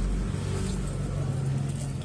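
A low engine rumble that swells about a second and a half in and eases off near the end.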